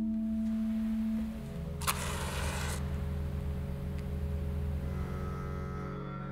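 Church pipe organ holding sustained notes. The higher note gives way to a lower held chord about a second and a half in. A short burst of noise comes about two seconds in.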